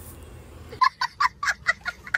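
A young child's high-pitched laughter in short, rapid bursts, about eight a second, starting just under a second in after faint room tone.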